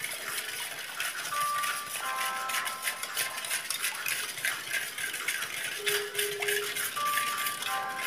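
A whisk rattling and clicking quickly against the sides of a steel bowl as milk and powdered sugar are mixed, with quiet background music of a few held notes.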